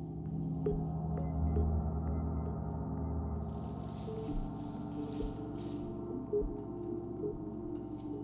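Large hanging gong ringing with a long, low, shimmering sustain after a mallet stroke, soft keyboard notes beneath it. About halfway through, a seed-pod rattle is shaken in a few quick rustling bursts.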